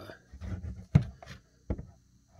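A cardboard trading-card hobby box being handled and turned over by hand, with a sharp knock about a second in and a second, softer knock shortly after.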